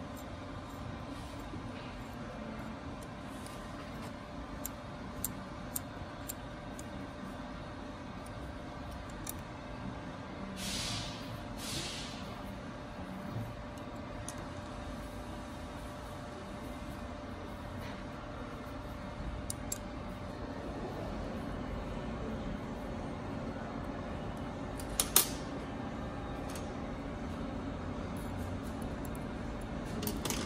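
Small metal clicks and taps from handling a DDEC VI injector in its steel spring-removal fixture, over a steady workshop hum. There are two short hisses near the middle, and one sharper, louder click a little past two-thirds of the way through.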